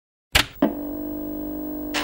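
A musical sting: two sharp hits about a quarter-second apart, then one held chord that rings steadily without fading.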